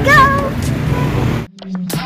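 A young girl's high-pitched voice in a short sing-song call over steady outdoor background noise. About one and a half seconds in it cuts off abruptly to an electronic intro effect: a low steady hum with falling swoops.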